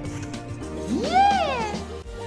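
A single cat meow, rising and then falling in pitch, lasting just under a second, over background music.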